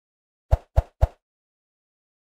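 Three short pop sound effects about a quarter second apart, the kind that mark like, subscribe and notification buttons popping onto an outro screen.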